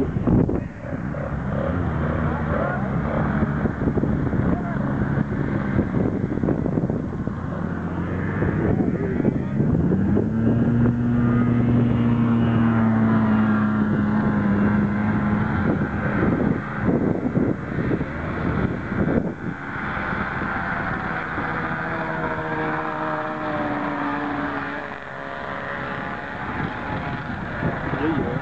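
Yamaha GPX 433 snowmobile's two-stroke engine running hard on a speed run. Its note climbs about ten seconds in, holds for several seconds and then slowly drops; a second, higher engine note comes later.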